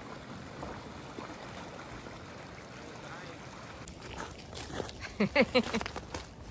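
Steady wash of water and a small passenger ferry boat coming in, heard as an even noise, with a person's voice near the end.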